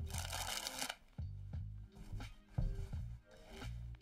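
Background music with a steady bass line. In the first second there is a short, rasping burst of a deck of playing cards being riffled, with a few light card clicks after it.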